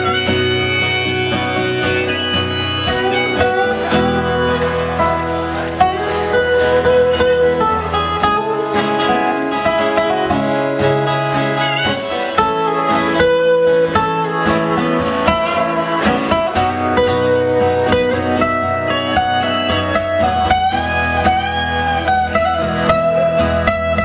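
Instrumental break of a live country-folk song with no singing: a harmonica in a neck rack plays held and bent notes over two strummed acoustic guitars.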